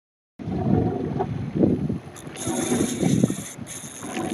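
A spinning reel's drag buzzing as a hooked permit pulls line, starting about two and a half seconds in and breaking off briefly near the end. Under it are wind on the microphone and muffled voices.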